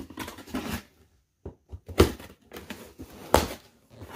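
Cardboard shipping box being handled and opened: rustling and scraping of the cardboard, with two sharp knocks, one about halfway through and one near the end.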